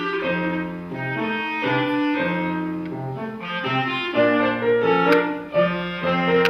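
Clarinet playing a tango melody with piano accompaniment, the piano's low bass notes repeating in a steady rhythm.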